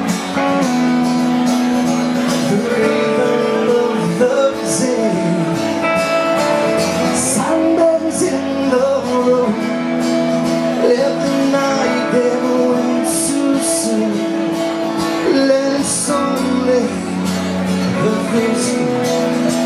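Live band music: strummed acoustic guitar with electric guitar, bass and drums, with cymbal crashes every few seconds, and a male voice singing.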